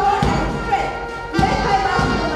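March music: a wavering melody over heavy drum beats.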